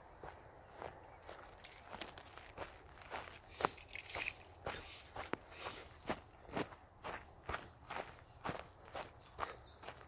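A person's footsteps walking over dry grass and pine needles on a forest floor, about two steps a second, growing steadier and louder about two seconds in.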